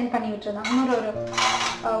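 Stainless steel plates clinking and scraping together as they are handled, under a woman's voice.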